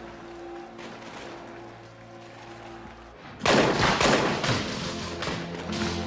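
Soft film-score music of held notes, then about three and a half seconds in a sudden burst of musket gunfire: several loud shots in quick succession over the music.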